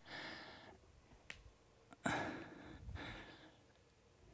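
A woman breathing out audibly twice while exercising, a short breath at the start and a longer, louder one about halfway through, with a soft click between them. The breaths are the effort of repeated lunges.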